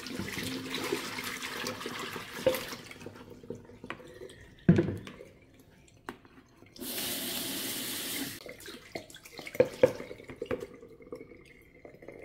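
A kitchen tap running into a sink in two stretches, about three seconds at the start and again for about a second and a half past the middle. Between them comes one sharp knock, the loudest sound, and a few smaller clinks and knocks follow near the end, as of dishes being handled in the sink.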